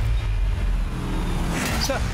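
A car's engine running low as the car pulls up, with voices starting up close by near the end.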